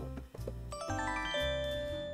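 A bell-like chime jingle used as a segment-change sound effect. About a second in, a run of ringing notes enters one after another and the notes then ring on together. Quiet background music plays underneath.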